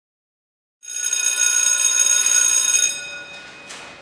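Electric school bell ringing loudly for about two seconds, starting about a second in, then stopping and dying away.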